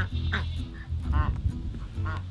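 White domestic ducks quacking, two short calls about a third of a second in and again just after a second, as the flock follows its keeper begging for food.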